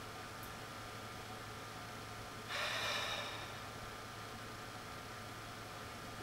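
A quiet room with a steady low hum, broken about two and a half seconds in by one short, breathy exhale from a person, lasting about half a second.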